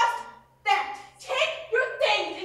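Speech: actors' raised voices in short, sharp bursts during an angry argument on stage.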